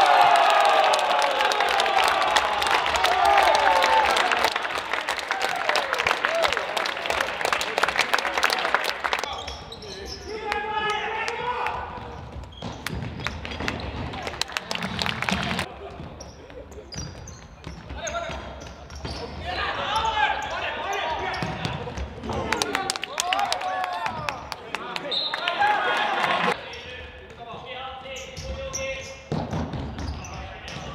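Futsal ball being kicked and bouncing on a hard sports-hall floor, with many sharp knocks in the first several seconds and fewer later, while players shout across the court.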